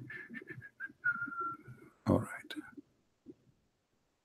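Faint, muffled voice over a poor call line, broken up with short high electronic pips. About two seconds in there is a brief burst of noise with a click.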